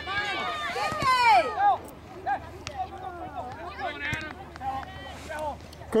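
Several voices shouting and calling out at once during a soccer game, overlapping and unclear, loudest in the first two seconds. One voice calls out "good" at the very end.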